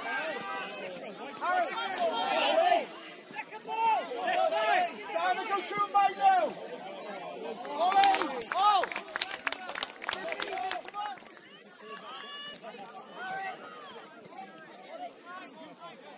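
Indistinct shouting and calling from players and spectators at an outdoor football match, with a quick cluster of sharp clicks about eight to ten seconds in.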